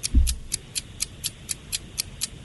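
Countdown-timer ticking sound effect, sharp even ticks about four a second, marking the seconds left to answer a quiz question. A brief low thump comes just after the start.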